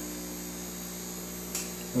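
Steady low electrical hum of the aquarium's running pump equipment, with a brief tick about one and a half seconds in.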